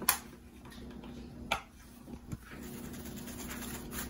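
A few short, sharp clicks and taps from handling a spice container while parsley flakes are shaken over raw chicken drumsticks, over a faint steady hum. The loudest click comes right at the start, another about a second and a half in, and a softer one shortly after.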